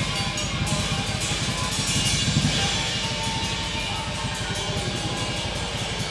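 Live band playing: a drum kit with busy cymbal work and bass drum under saxophone and electric guitar, dense and steady throughout.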